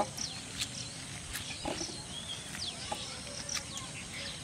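Small birds chirping, short falling chirps repeating throughout, over light rustling and a few soft clicks from hands sorting leafy greens in a bamboo basket.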